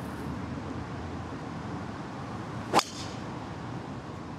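Golf club striking a ball off the tee: a single sharp crack of the clubhead on the ball near the end, over steady low background noise.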